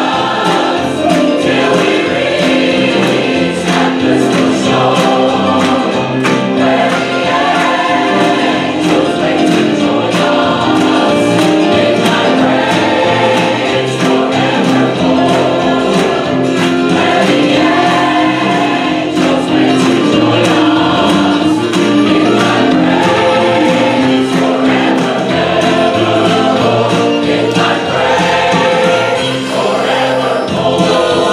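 A mixed choir singing an upbeat gospel song, with hand claps keeping a steady beat.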